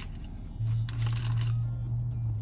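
A man's low closed-mouth 'mmm' while eating, held at one steady pitch for nearly two seconds from about half a second in. Brief rustling of handled food sounds over its start.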